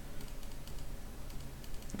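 Faint, irregular light clicks and taps from a computer input device, several a second, while annotations are drawn on screen, over a low steady hum.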